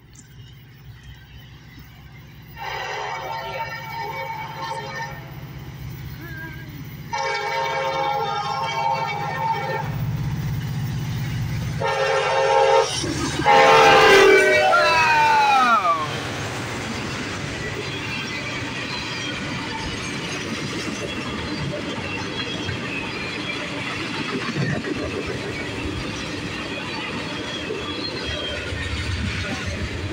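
Freight train's diesel locomotive approaching and sounding its air horn: two long blasts, a short one and a long one, the last one sliding down in pitch as the locomotive passes. Then the steady rolling clatter of freight cars going by on the rails.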